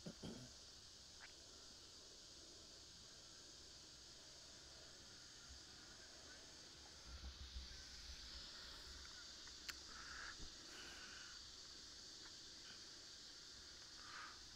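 Near silence: faint open-air field ambience with a steady high hiss and low wind rumble on the microphone, and a single sharp click about ten seconds in.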